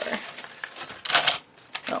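Paper memo pads being picked up and handled on a cluttered table: a brief rustle of paper a little after one second in, with a few small taps and clicks around it.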